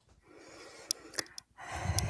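A person breathing in audibly before speaking, with a few faint mouth clicks, and the breath swelling near the end.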